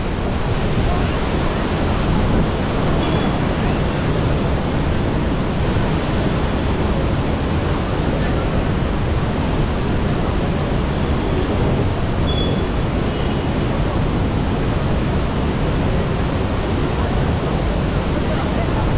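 Waterfall rushing close by: a steady, dense noise of heavy falling water, unchanging throughout.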